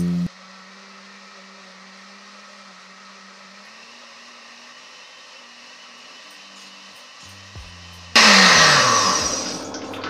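Countertop blender motor running on frozen mango chunks with a steady hum that creeps slowly up in pitch. About eight seconds in it suddenly turns much louder and rougher, its pitch dropping, then eases off.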